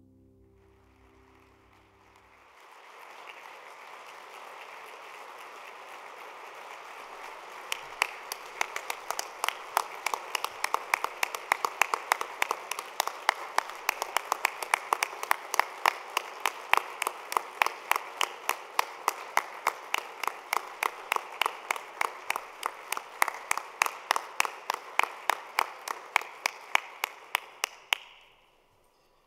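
A piece of music ends about two seconds in and audience applause takes over, swelling and running for some 25 seconds. From about eight seconds in, one person's claps close to the microphone stand out, about four a second, until the applause stops near the end.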